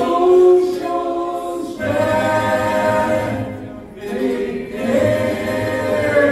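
Group of singers with a tamburitza orchestra, singing three long held chords in harmony over a low bass line.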